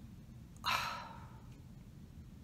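A woman sighs: one breathy exhale a little over half a second in, fading out over most of a second.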